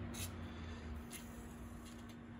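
Aerosol lubricant can spraying through its straw tube into an engine cylinder, a faint hiss, over a low steady hum.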